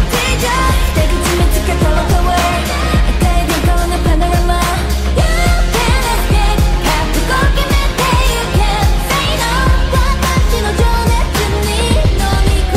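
K-pop song with a female group singing over a steady beat and deep bass, mixed as 8D audio so the sound pans around the listener's head.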